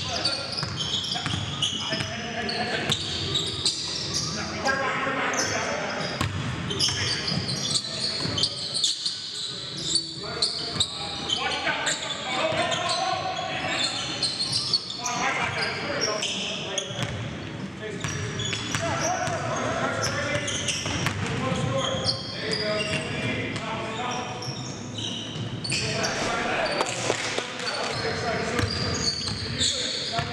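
Basketball being dribbled and bounced on a gymnasium's hardwood floor, sharp repeated thuds echoing in the hall, with indistinct players' voices and shouts throughout.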